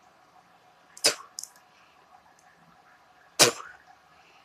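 Two short, sharp breath noises right at the microphone, about two and a half seconds apart, in a quiet room.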